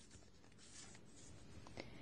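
Faint rustling of a small folded paper slip being unfolded and pulled open by hand, over near silence.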